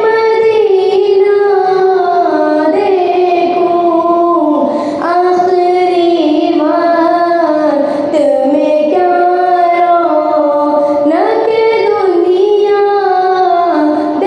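A young girl singing a naat, a devotional poem in praise of the Prophet Muhammad, solo into a microphone. Her voice slides and ornaments between held notes in long phrases, with short breaks for breath every few seconds.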